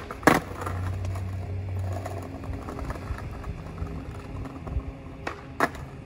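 Skateboard trick on brick pavers: the board lands with a loud clack about a third of a second in, then the wheels roll with a low rumble that eases off after about two seconds. Two more sharp clacks come near the end.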